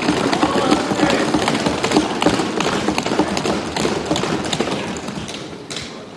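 Many members of parliament thumping their desks in applause: a dense, continuous patter of hand blows on the benches that thins out near the end.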